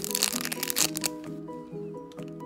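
Clear plastic bag crinkling as a squishy bread-roll toy is squeezed inside it, dense for the first second or so and then only a few crackles, over steady background music.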